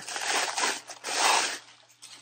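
Packaging rustling and crinkling in two bursts as tinted wine glasses are unwrapped from their box.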